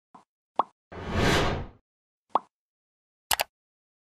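Animated logo and subscribe-button sound effects: a few short pops, a rushing whoosh lasting about a second, then a quick double click near the end, the kind of mouse click that goes with a subscribe button being pressed.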